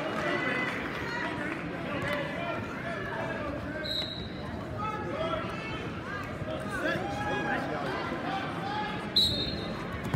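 Overlapping voices of a crowd in a gym hall, with two short, shrill referee's whistle blasts about four seconds in and near the end. The second blast starts the wrestling from referee's position.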